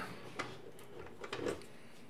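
A few faint, short clicks and light handling knocks over quiet room tone.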